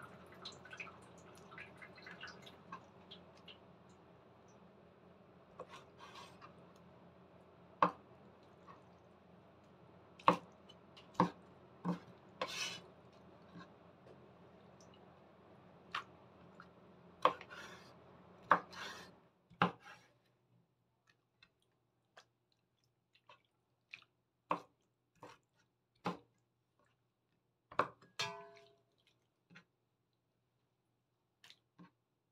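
A cleaver-style kitchen knife strikes a wooden cutting board in sharp, irregularly spaced knocks as it cuts through soaked, rubbery wood ear mushrooms.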